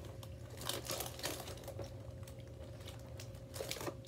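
Snack packaging crinkling as a hand rummages in an opened box of bite-size graham crackers, in a cluster of crackles from about half a second to a second and a half in and another brief one near the end.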